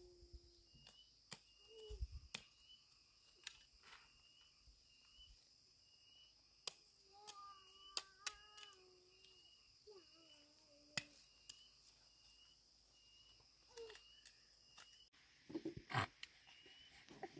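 Faint rural ambience: a steady high insect drone and a short high chirp repeating about one and a half times a second, with a few drawn-out animal calls in the middle and scattered sharp clicks.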